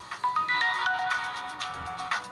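A mobile phone ringing with a melodic, music-style ringtone: a quick run of bright notes over a fast clicking beat.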